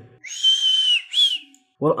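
A high whistle: one note slides up and holds for most of a second, then a short second note rises and falls.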